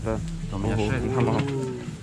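A person's voice: a short "да", then a long, drawn-out vocal sound that falls slightly in pitch about halfway in, over steady low background hum.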